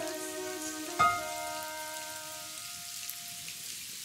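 Steady rain falling under the close of a pop song: the last held chord dies away, and a single struck chord about a second in rings out and fades, leaving the rain.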